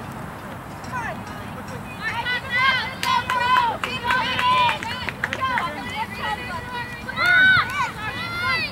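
Women's voices shouting and calling across a soccer field during play, distant and not forming clear words. It is quieter for the first two seconds, then the calls come repeatedly, loudest shortly before the end.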